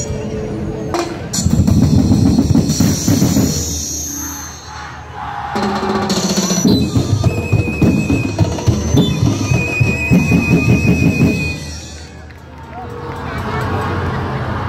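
Festival drum ensemble of bass drums, snares and cymbals playing loud, driving rhythms in two long stretches, easing off briefly about four and a half seconds in and again near twelve seconds.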